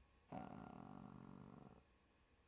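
A man's long, quiet, drawn-out "uhh" of hesitation, held at a steady pitch for about a second and a half.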